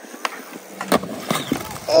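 Skateboard wheels rolling on concrete, then a few sharp knocks and clatters, the strongest about a second in, as the skater bails and falls and his board shoots off across the ground.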